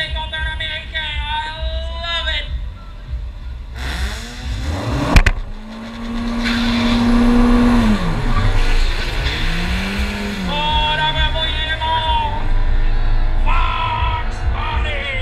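Background music with singing over a car engine revving up at a drag strip, with a sharp crack about five seconds in.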